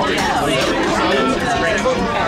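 Several people talking over one another in casual group chatter.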